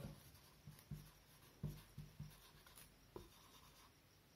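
Felt-tip marker writing on paper, very faint: a few soft, irregular strokes as words are written out.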